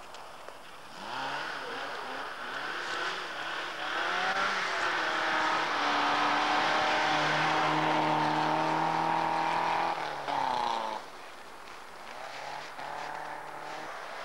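Rally car engine revving hard, its pitch climbing, dipping and climbing again as it pulls through the gears, then held high and loud before falling away sharply about eleven seconds in as the car goes past. A second car's engine is heard more faintly near the end.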